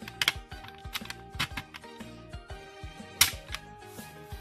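Several sharp plastic clicks as the rotating X/O tiles of a handheld tic-tac-toe rolling game are flicked round by hand, the loudest about three seconds in, over steady background music.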